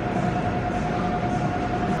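Supermarket background noise: a steady rumbling hiss with a constant mid-pitched whine over it, which cuts off near the end.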